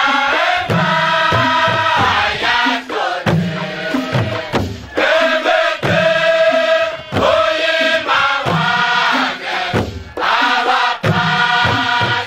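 A large crowd singing together, a chant-like song in phrases a second or two long with brief breaks between them.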